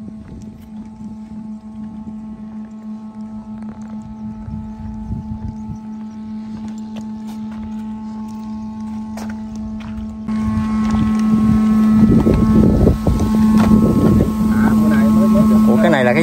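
Steady electric motor hum with an unchanging pitch, faint at first and much louder from about ten seconds in, with low rumbling wind and handling noise on the microphone.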